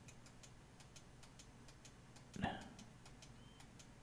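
Near silence with faint, evenly spaced ticking, several ticks a second, and one brief soft vocal sound about halfway through.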